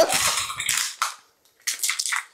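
A crinkly plastic bag of dry rolled oats rustling as a measuring scoop digs oats out of it, with a short pause about midway and more rustling near the end.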